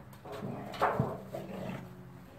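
American bulldog growling as it noses and grabs a black plastic pan, with a sharp knock of the pan on the ground about a second in.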